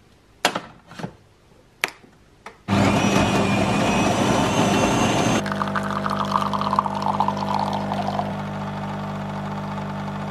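Bean-to-cup coffee machine at work: a few clicks as the mug is set in place and the machine started, then a burst of grinding about three seconds in. From about halfway through the grinding gives way to the pump's steady hum as coffee pours from its twin spouts into the mug.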